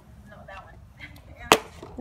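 A small plastic water bottle, tossed in a bottle flip, hits asphalt once with a sharp smack about one and a half seconds in and ends up on its side rather than upright.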